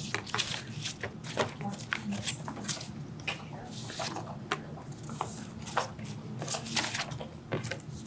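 Irregular small clicks and rustles, as of objects being handled on a table, with low murmured voices.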